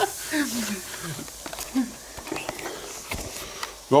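Quiet stretch of faint voices and a short laugh over a light, steady hiss, with a few soft knocks near the end.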